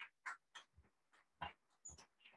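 Near silence in a hall, with faint, irregular short knocks and rustles: footsteps and handled paper as a man walks away from the lectern.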